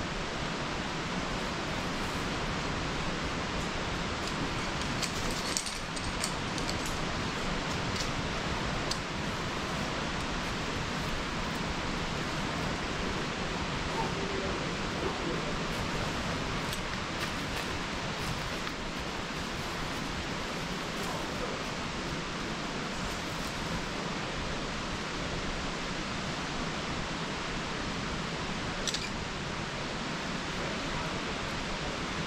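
Steady, even outdoor background hiss with no clear source, broken by a few faint clicks.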